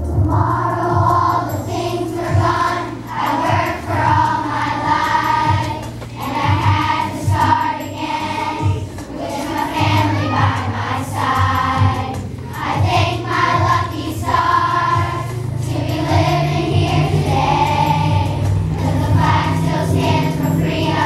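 A children's choir singing together over an instrumental accompaniment with steady held bass notes.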